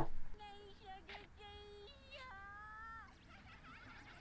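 A high voice from the anime playing quietly in the background sings a short run of held notes that step up and down in pitch, ending on a higher held note about three seconds in.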